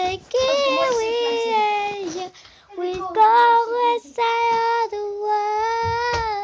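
A young boy singing, holding long notes in several phrases, with short breaks for breath a little past two seconds in and about four seconds in.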